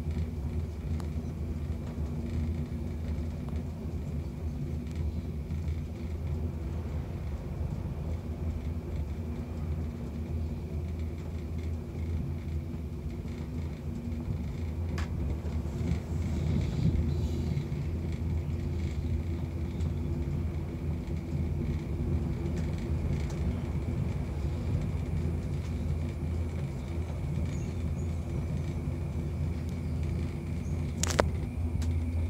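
Steady low rumble inside a moving Skyrail cableway gondola cabin, with a faint steady high whine over it.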